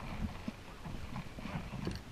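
Irregular footsteps and hollow knocks on wooden dock boards.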